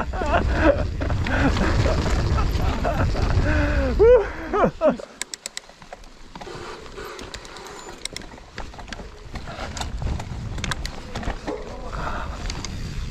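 Santa Cruz 5010 mountain bike rolling down a dirt forest trail: heavy wind and trail rumble on the camera microphone for the first four seconds, then quieter rolling with scattered sharp clicks and rattles from the bike, the rumble building again near the end.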